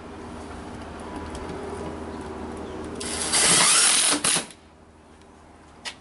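Cordless screwdriver driving a square-head self-tapping screw into the retractable screen's track: a steady motor whine that builds for about three seconds, then a loud harsh burst of about a second as the screw drives home, stopping about four and a half seconds in.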